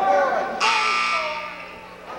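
Gymnasium scoreboard horn sounding about half a second in: a steady electric buzz that fades away, heard over voices in the gym.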